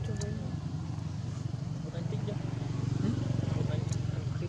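A steady low hum with a few short, high, gliding calls over it.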